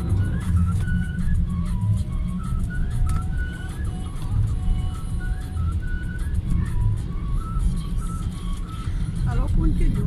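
Steady low rumble of a car driving, engine and road noise heard inside the cabin, with a thin high melody of single notes stepping up and down over it.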